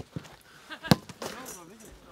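A football struck hard once, a sharp thud about a second in, with players' voices around it.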